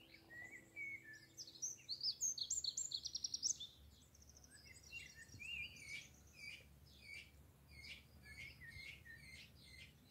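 Songbirds singing and chirping: a loud, fast trill a couple of seconds in, then a run of short repeated high notes, about two a second.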